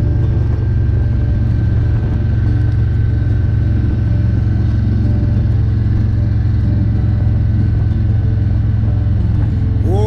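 Steady wind rush and engine drone from a Harley-Davidson Road Glide Special cruising at highway speed. A heavy low rumble of wind on the handlebar-mounted phone's microphone dominates.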